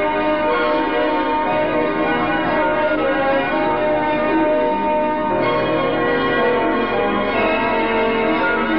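A dense, continuous peal of many bells ringing at once, steady in level, with the mix of pitches shifting a little after five seconds.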